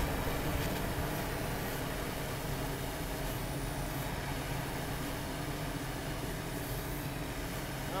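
Steady low mechanical hum under an even hiss, unchanging throughout.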